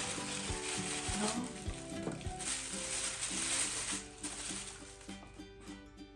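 Paper and tissue rustling and crinkling as a small gift is unwrapped, dense for about four seconds and then dying away, over light background music.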